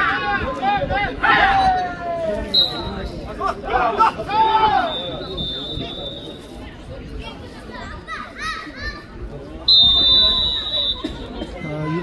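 Players' raised voices and shouts in several bursts as a jokgu set is won. A high steady whistle-like tone sounds three times, the last the longest and loudest.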